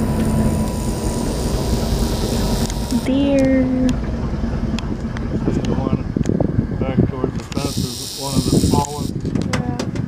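Indistinct voices talking over the steady running of an open-air tour bus.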